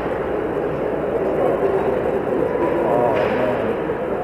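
Steady crowd and game din of a hockey arena during play, with a faint distant shout about three seconds in.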